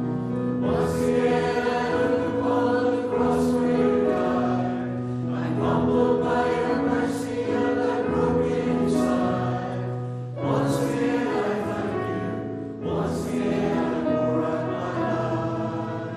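Congregation singing a hymn together, in long sung phrases with brief breaths between them.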